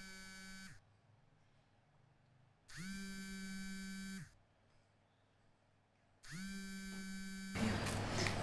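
Telephone ringing tone: a buzzy electronic tone sounding in rings about a second and a half long with about two seconds of silence between them, one ring trailing off about a second in and two more full rings after.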